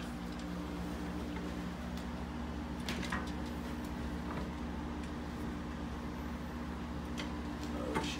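An appliance dolly carrying a glass display case is eased down carpeted stairs: a few light knocks and clicks over a steady low hum.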